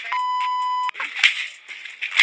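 A steady 1 kHz bleep tone, cut in sharply and lasting under a second: an edited-in censor bleep over a spoken word. About a second in, a sharp thump follows.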